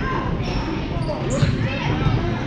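Basketball bouncing on a gym floor during a youth game, with a steady background of voices and one sharp knock about one and a half seconds in.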